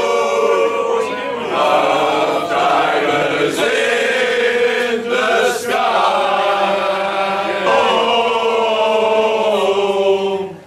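A group of men singing a song together, loud, in long held notes with short breaks between lines.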